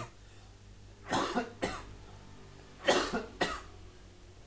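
A person coughing: two short bouts of double coughs, about a second in and again about three seconds in.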